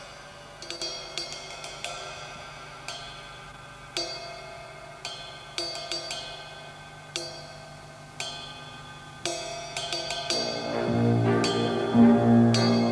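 A soft, sparse drum-kit solo on a Tama kit: single ringing cymbal strokes and light drum hits, roughly one a second, each left to ring out. Near the end the big band comes back in with a sustained chord that swells in loudness.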